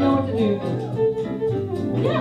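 Live western swing band playing, with two fiddles bowing over acoustic guitar.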